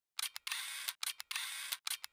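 Channel-logo intro sound effect: a few sharp clicks, then a short burst of thin, high hiss ending in another click, the whole pattern played twice about a second apart.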